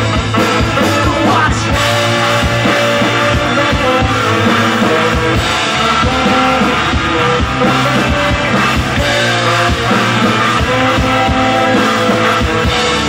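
Live ska-punk band playing an instrumental passage: saxophone and trumpet holding long notes over electric guitar and a drum kit, loud and steady.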